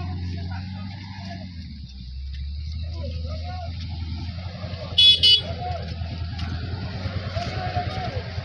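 Motor vehicle engine running with a steady low drone, and two short, high-pitched horn toots about five seconds in.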